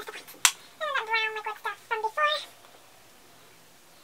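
A house cat meowing: a run of several high, drawn-out meows with bending pitch in the first two and a half seconds, just after a sharp click.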